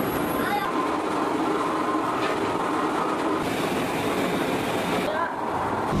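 Steady roar of rows of gas burners firing under black water-tank moulds, with the rumble of the workshop machinery and faint indistinct voices underneath.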